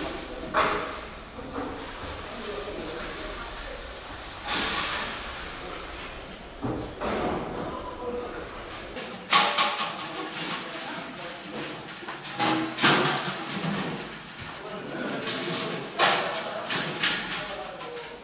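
Background chatter of several people in a busy brewing kitchen, broken by knocks and clatter of stainless-steel kettles and equipment. The loudest knocks come about nine, thirteen and sixteen seconds in.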